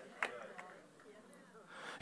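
A pause between a man's shouted sermon lines: a faint click, then near silence, then a sharp intake of breath just before he speaks again.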